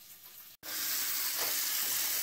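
Kitchen sink faucet running, a steady rush of tap water that starts abruptly about half a second in, after faint room tone.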